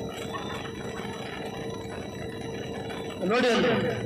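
Steady background noise of a large event venue with a constant faint hum, in a pause of a man's amplified speech. His voice comes back loudly through the PA near the end.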